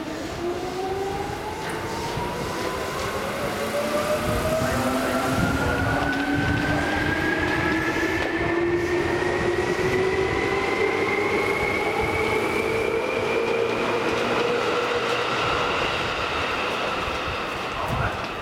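Electric train's traction motors and inverter whining as it accelerates, several tones rising together slowly and steadily in pitch, over a rumble.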